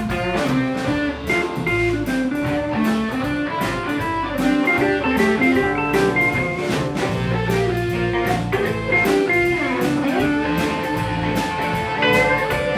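Live blues band playing an instrumental passage: electric guitar playing single-note lead lines over bass guitar and drum kit, with a steady beat.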